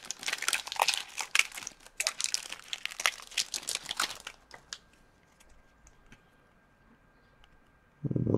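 Foil wrapper of a 2015-16 Upper Deck Series One hockey card pack crinkling and tearing as it is ripped open by hand, for about four seconds, then near quiet with a few faint ticks as the cards come out.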